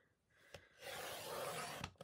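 Fiskars sliding paper trimmer cutting a sheet of patterned cardstock: the blade carriage scrapes along the rail for about a second, starting nearly a second in.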